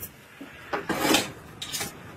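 Metal tongs scraping and clinking against an enamel bowl as cooked beef pieces are put in: a longer scrape around the middle, then two short clinks.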